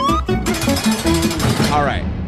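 Segment-intro music sting: a beat with a rising pitch glide, then a harsh, rapid rattling buzz for about a second and a half.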